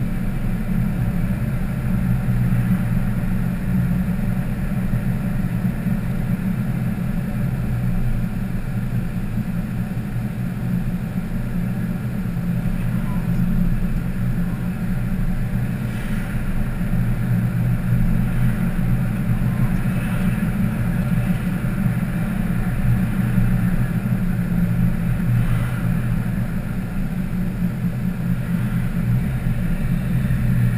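Steady engine and road noise of a car driving at a constant speed, heard from a dashcam inside the cabin.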